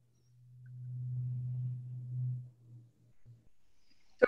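A low, steady hum at one pitch that swells over the first second or so and fades out about two and a half seconds in.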